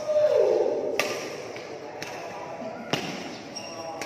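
Badminton rackets striking a shuttlecock in a drive rally: sharp cracks about a second in and again near three seconds in, each ringing briefly in the hall. A short voice call with falling pitch is the loudest sound, right at the start.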